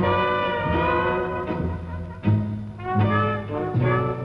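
A traditional jazz band playing: a brass front line led by trumpet over a plucked double bass that sounds a low note about every three-quarters of a second.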